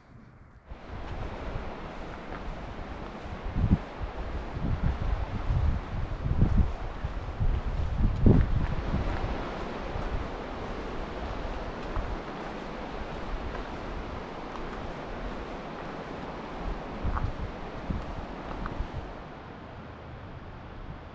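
Wind buffeting the camera microphone in low gusts, strongest about four to nine seconds in, over a steady rushing noise.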